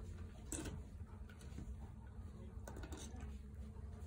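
Kittens eating from a small steel bowl: faint chewing and lapping with a few small clicks, over a low steady rumble.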